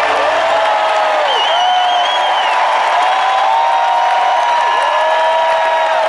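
Large arena crowd cheering and whooping, with a shrill wavering whistle about a second in. The band's last held chord dies away within the first second.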